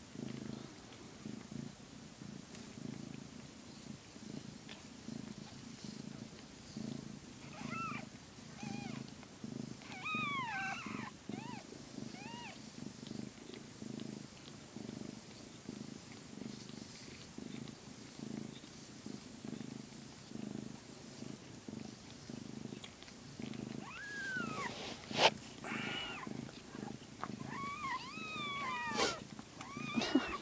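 A calico mother cat purring steadily and rhythmically while in labour. Newborn kittens give short, high, thin squeaks that rise and fall, in a cluster about a third of the way in and again near the end. One sharp click comes near the end, the loudest sound.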